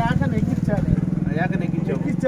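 Men talking in Telugu at close range. Under the voices a steady low engine hum runs, as from a motor idling nearby.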